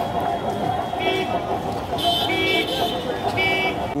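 Street traffic with vehicle horns honking: four short honks, the first about a second in and three more in the last two seconds, over steady traffic noise.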